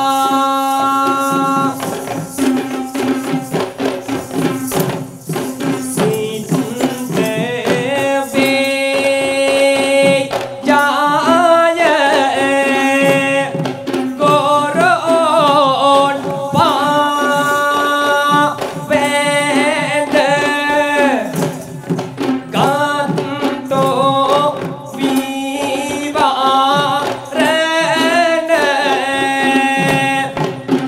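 A voice singing a song over a steady low drone and a quick, constant beat of Kandyan geta bera drums.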